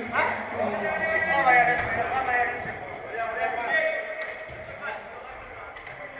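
Men's voices calling out across an indoor five-a-side football pitch during play, loudest in the first few seconds and fading toward the end.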